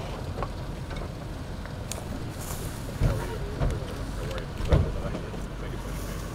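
Low, steady outdoor rumble with faint voices in the background and three short thumps about halfway through.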